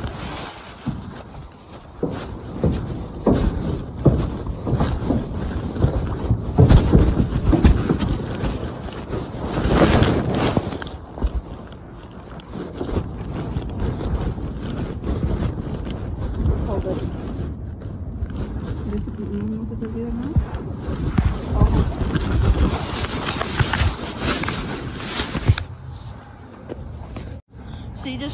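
Muffled rubbing, bumping and rustling on a phone's microphone as it is carried with its lens covered, with faint muffled voices now and then.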